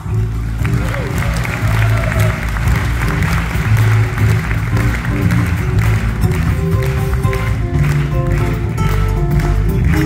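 Audience applause breaking out over a live band that keeps playing (acoustic guitar, cello and drum kit), the clapping fading out about halfway through while the instruments carry on.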